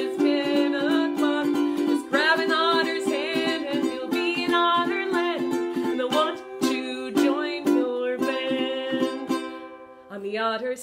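A woman singing a children's song while strumming a ukulele in steady chords. The music dips briefly at the very end.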